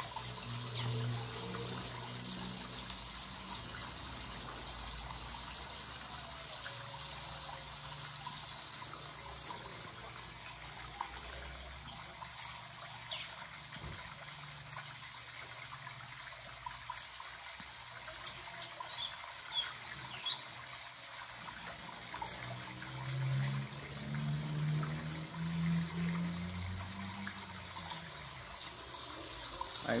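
A recorded waterfall played back to get a caged coleiro (double-collared seedeater) singing: steady trickling, splashing water. Short high bird chirps are scattered through it.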